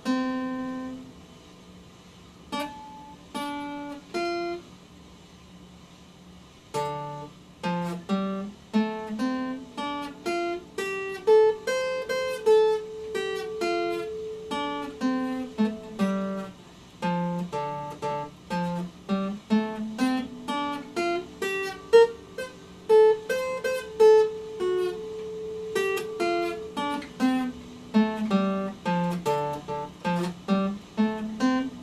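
Epiphone acoustic-electric guitar played alone, single notes picked one at a time up and down a D scale. A few scattered notes come first, then from about seven seconds in, steady runs climb and fall several times.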